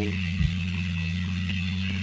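A steady low electrical hum, with one brief knock about half a second in.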